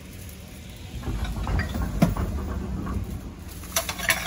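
Thin plastic garbage bag rustling and crinkling as it is handled and filled, with a sharp click about two seconds in, over a low rumble.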